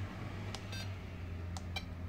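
Flysky FS-i6X RC transmitter beeping as its menu buttons are pressed: short electronic beeps, two quick pairs about a second apart, over a steady low hum.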